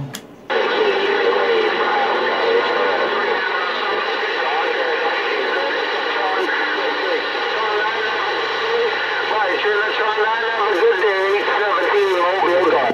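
Incoming transmission heard through a Galaxy CB radio's speaker: another operator's voice, hard to make out, with steady whistling tones laid over it. It comes in about half a second in, after a brief drop-out.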